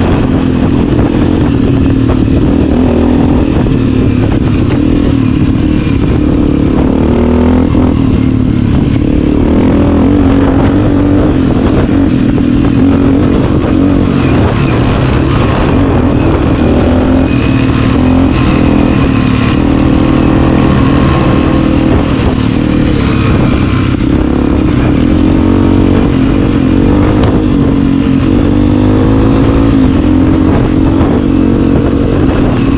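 Honda CRF250F's single-cylinder four-stroke engine running under way, heard from on the bike, with its pitch rising and falling a little as the throttle changes.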